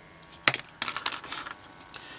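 A sharp click about half a second in, followed by about a second of rustling with small clicks: handling noise as the camera is moved.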